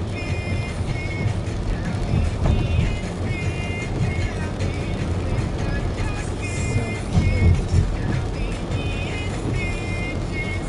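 Music with a melody in short repeated phrases, over the steady low rumble of a car driving on a wet road.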